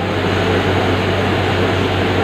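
Steady rushing background noise with a constant low hum underneath, no clear events.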